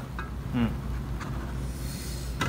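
Low, steady background hum with one short murmured vocal sound about half a second in and a couple of faint clicks.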